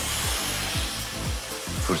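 Dyson Supersonic hair dryer blowing steadily, mixed with background music that has a quick bass beat of about four thumps a second.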